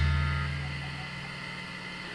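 Final chord of a rock song ringing out and fading: low sustained guitar and bass notes dying away to a faint hum.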